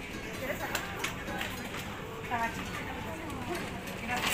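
Faint background voices of people talking at a supermarket counter, with a few light clicks and clatter over a steady hum of the shop.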